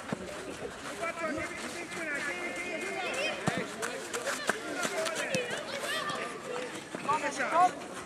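Overlapping shouts and calls from players and onlookers at a children's football game, with high children's voices among them. A louder shout comes near the end.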